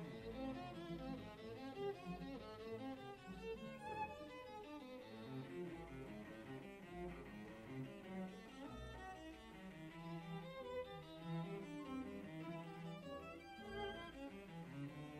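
Violin and cello playing together, a busy passage of quick notes over a lower line.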